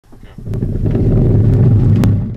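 Deep rumbling intro sound effect, swelling in from silence over the first half second, with sharp clicks about half a second in, at a second and a half and at the end.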